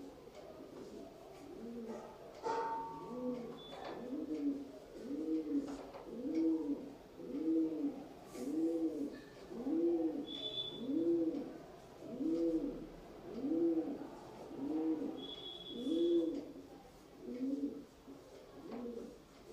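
A pigeon cooing: a long, regular run of low coos, a little more than one a second, beginning a couple of seconds in.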